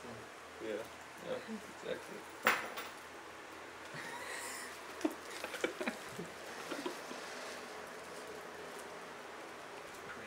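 Quiet, hushed voices in a small room: a few short, soft vocal sounds near the start. There is a sharp click about two and a half seconds in, then a brief rustle and a handful of small clicks and taps around the middle.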